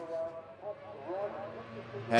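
Racing superbike engines heard faintly from trackside, their pitch rising and falling with the revs as the bikes go by.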